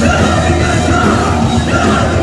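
A heavy metal band playing live and loud, with electric guitars through Marshall amplifiers, bass and drums under a male singer's high, shouted vocal line.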